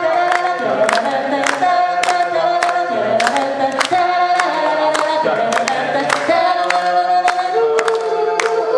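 A crowd of voices singing along in unison with a male singer at a microphone, with irregular hand claps throughout.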